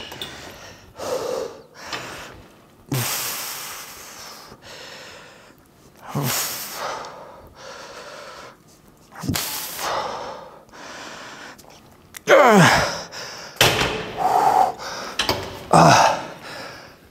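A man breathing hard during a set on a seated leg machine: forceful hissing exhales about every three seconds, then louder strained groans in the last few seconds as he pushes toward muscle failure.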